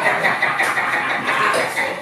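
Electric hair clippers running with a steady buzz.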